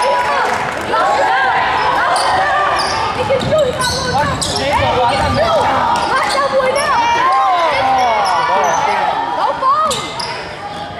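Basketball game on a hardwood gym floor: many short sneaker squeaks and a basketball bouncing, mixed with voices of players and spectators calling out.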